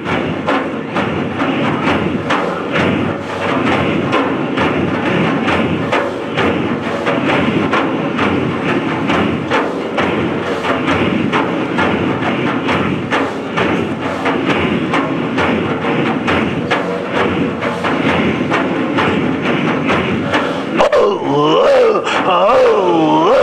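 Large frame drums beaten in a steady, driving rhythm under a group of men's rhythmic, breathy dhikr chanting.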